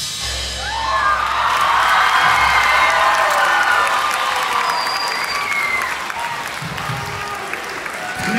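Crowd cheering and whooping, with applause, as a live drum solo ends; several high whoops rise and fall through the middle.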